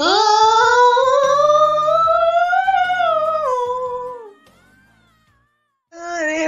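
A female singer holds one long, high sung note live. She scoops up into it from below, climbs slowly to a peak about three seconds in, then lets the pitch sag before ending it a little over four seconds in, over quiet band accompaniment.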